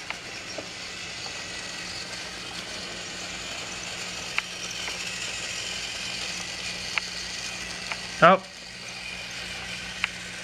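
Motorised toy train running on its track: a steady small-motor and gear whir with a few faint clicks.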